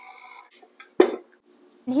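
Stand mixer motor running briefly with a steady whine, stopping about half a second in. About a second in comes a single sharp clink of kitchenware.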